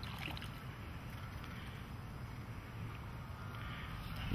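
Faint, steady low rumble of outdoor background noise, with no distinct event.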